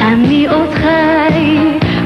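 Up-tempo pop song performed live: a singing voice over the band, in Hebrew-language Eurovision pop.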